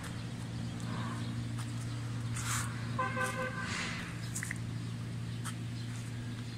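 Small single-cylinder horizontal diesel engine running steadily and driving a concrete pan mixer through V-belts. A short pitched tone sounds about three seconds in.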